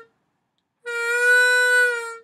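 Diatonic harmonica in A played on the 4 draw. A held note ends right at the start. After a short gap a second held note of about a second begins slightly bent flat and rises to pitch: a 4 draw bend released into the 4 draw.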